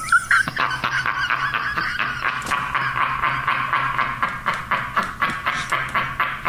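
A man laughing hard and helplessly: high-pitched, squealing laughter in rapid pulses, several a second, fading out near the end.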